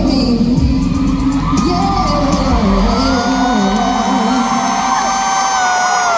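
Live R&B concert music in an arena, recorded from the crowd: the bass and backing drop out partway through, and one long note is held until it falls away at the end, over crowd cheering and whoops.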